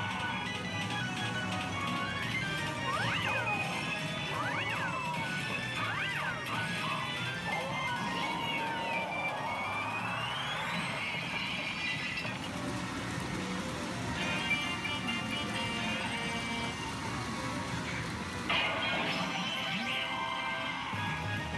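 Pachinko machine's electronic music and sound effects, with crashing effects and three rising-and-falling whistle-like swoops about three to six seconds in.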